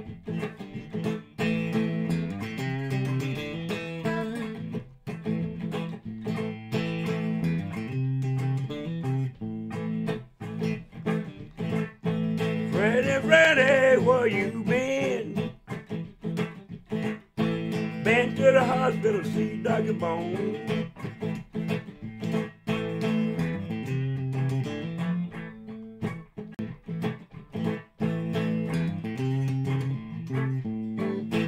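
Electric blues recording in an instrumental break: guitar lead lines over a repeating bass figure, with bent, wavering guitar notes a little before halfway and again a few seconds later.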